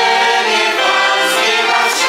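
Choir of adults and children singing together, holding notes and moving from note to note.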